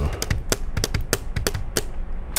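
A quick, irregular run of sharp clicks like typing on a keyboard, about a dozen in two seconds.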